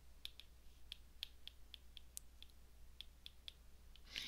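Faint, irregular light clicks of a stylus tip tapping and dragging on an iPad's glass screen while handwriting, a few taps a second.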